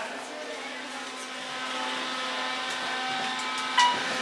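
Elevator running with a steady hum made of several held tones, and one short, bright ding near the end.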